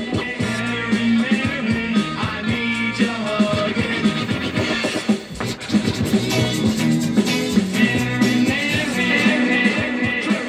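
Rock record playing on DJ turntables: guitar-led band with singing over a steady bass line.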